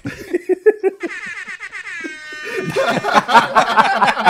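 Several men laughing together, first in short chuckles, then breaking into loud, sustained laughter about two-thirds of the way through.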